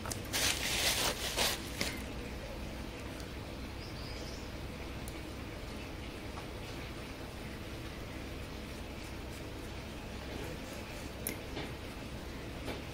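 Plastic bag crinkling as it is squeezed to pipe out texture paste, a rustling burst of about a second and a half near the start, then a steady low background noise with a faint click near the end.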